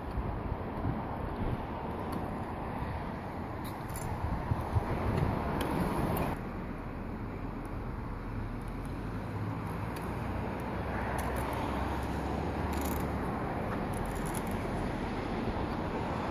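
Wind rumbling on the microphone over outdoor background noise, with no clear pitched sound; the noise changes abruptly about six seconds in.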